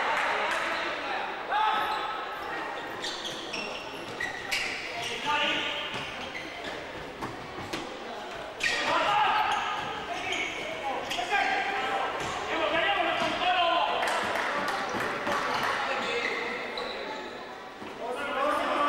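Futsal match in an echoing sports hall: the ball is kicked and bounces with repeated sharp knocks on the hard court floor, while players shout and call out.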